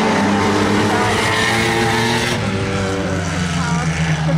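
Several dirt-track saloon race cars running hard together round the oval, their engines making a steady multi-tone drone. A louder, brighter rush of engine noise swells from about one second in and eases off shortly after two seconds.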